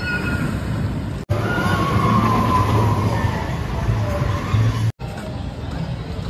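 Maverick steel roller coaster train running along its track: a steady low rumble with a wavering high whine over it. The sound cuts off abruptly about a second in and again near the end.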